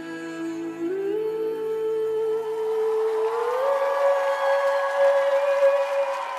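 Music: a woman sings one long held note over a sustained backing, stepping up in pitch twice.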